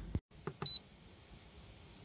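A single short, high electronic beep from a Simrad AP44 autopilot controller as a key is pressed, preceded by a few faint clicks.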